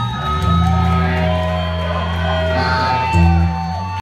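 Live rock band playing amplified electric guitar and bass, holding long chords, with a louder chord change about three seconds in.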